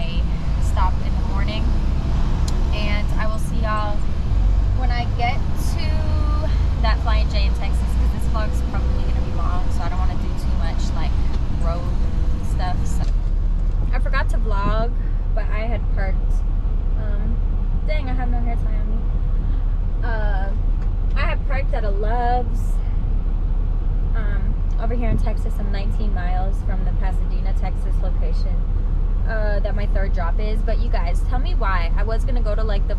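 A woman talking inside a semi-truck cab over the low rumble of the truck's diesel engine. About 13 seconds in, the rumble gives way to a steadier low hum.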